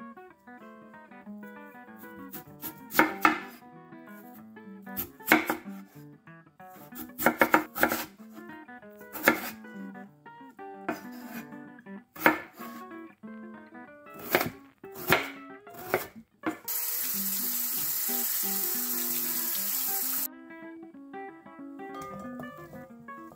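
Chef's knife chopping through raw peeled potatoes onto a wooden cutting board, single cuts and short quick runs of cuts spread out with pauses between. Near the end a loud steady hiss runs for about three and a half seconds.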